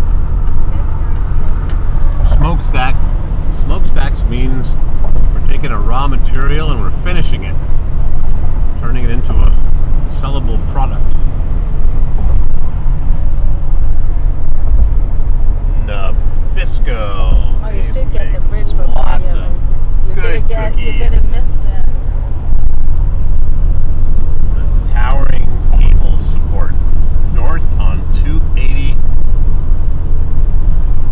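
Steady low road and engine rumble inside a car's cabin at highway speed.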